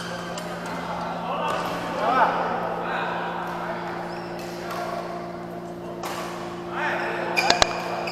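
Busy badminton hall sound: background voices and shoe squeaks on the court floor over a steady low hum, with a few sharp racket-on-shuttlecock hits near the end.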